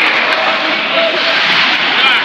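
Loud, steady ice-rink din with indistinct voices mixed in.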